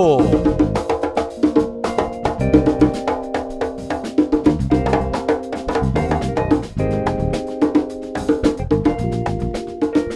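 Live band playing a percussion-led instrumental groove: fast hand-played percussion and cymbal strikes over held bass and keyboard notes.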